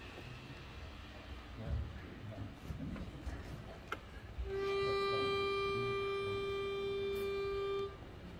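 Pitch pipe blown for one steady note, held for about three and a half seconds, sounding the starting pitch for a barbershop quartet before they sing. Faint room noise comes before it.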